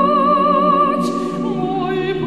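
An a cappella male vocal octet holds sustained chords while a soprano soloist sings a high line with a wide vibrato above them. A short sibilant consonant comes about a second in.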